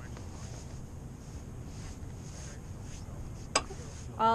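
Steady low rumble of a rowing shell running on the water, heard through the coxswain's microphone, with a single sharp click near the end.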